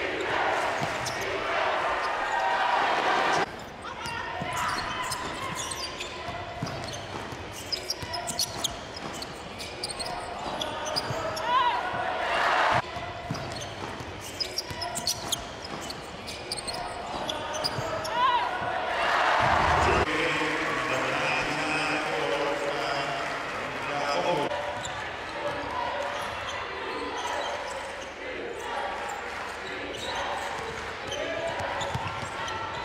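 Arena sound of a basketball game: a ball dribbling on a hardwood court amid crowd voices echoing in a large hall. The sound changes abruptly a few times, at edits between clips.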